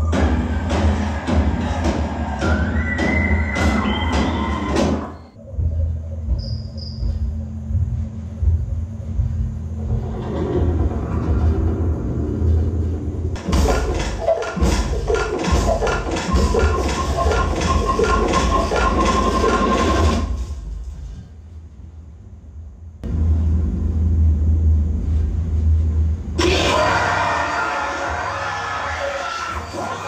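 A horror film's soundtrack played through the Zebronics Zeb Juke Bar 9600 soundbar and its subwoofer, with tense music over heavy, steady bass. It dips briefly about five seconds in, goes quiet for a couple of seconds about two-thirds of the way through, then comes back louder and shriller near the end.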